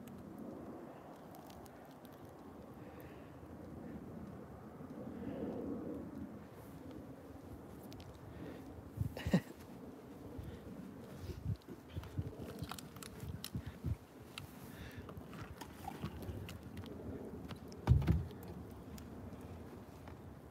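Wet firewood burning in a steel drum burn barrel, with scattered sharp crackles and pops over a low outdoor rumble. A loud thump comes near the end.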